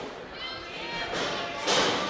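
Thuds of wrestlers' feet and bodies on a wrestling ring's canvas as two wrestlers grapple, with faint crowd voices echoing in a gym hall. A louder rush of noise comes near the end.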